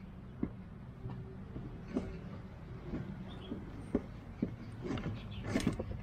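Light plastic and metal clicks and knocks, roughly one a second, as a road bike frame is lowered onto the mounting rail of a Topeak Pakgo X hard bike case and its catches are clipped in, over a low steady background rumble.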